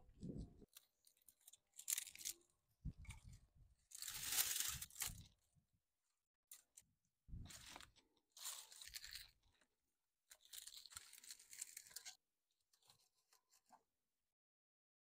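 Dry river cane being snapped and broken by hand into short pieces, in several separate bursts of cracking and crunching a second or two apart.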